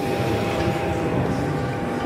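Steady low rumble of background room noise with a faint, steady high whine, and no distinct knocks or clanks.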